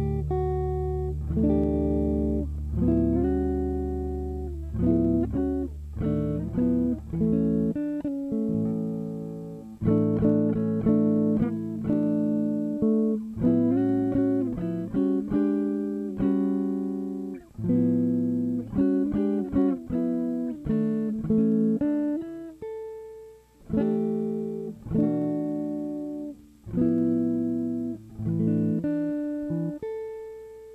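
Gibson Byrdland archtop electric guitar played solo with a pick in chord-melody style: chords and melody notes that ring and fade. A low bass note is held for about the first eight seconds.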